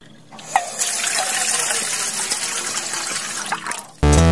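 Rushing, splashing water as a sound effect. It swells up in the first half second, holds steady, and cuts off abruptly at the end.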